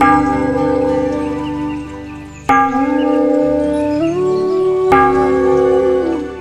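A temple bell struck three times, about two and a half seconds apart, each strike ringing on and fading, over soft background music.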